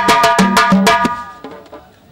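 Drums beating a fast, even rhythm of about seven strikes a second, which stops abruptly about a second in, leaving only a low background.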